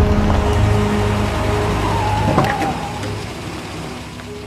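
Cars driving up and slowing to a stop, a low engine rumble that fades away, with background music trailing off. A couple of sharp clicks come about two and a half seconds in.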